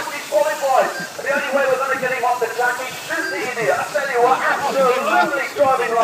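Speech: a man talking throughout, over a steady hiss.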